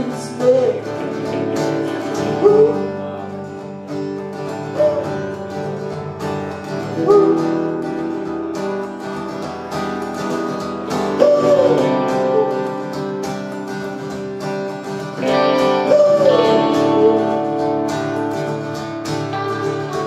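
Live guitar music from two players: a strummed acoustic guitar together with an electric guitar.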